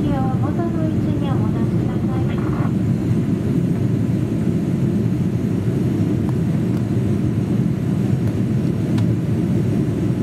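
Steady low rumble of a Boeing 787-8 airliner's cabin in flight, engine and airflow noise heard from a rear window seat as it descends toward landing. A cabin attendant's announcement over the PA runs over it for the first two and a half seconds or so, then only the cabin noise continues.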